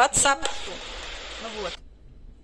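A woman talking over a steady hiss. The hiss cuts off suddenly near the end, leaving a much quieter background.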